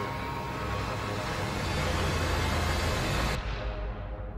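Dramatic sound-design rumble: a deep low drone under a swelling rush of noise that cuts off abruptly just over three seconds in.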